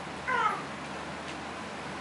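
A single short, high-pitched animal-like call, falling in pitch, about a quarter of a second in, over steady room hiss.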